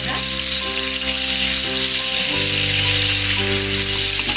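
Sliced onions frying in hot oil in a pan, a steady sizzle, as they begin to brown.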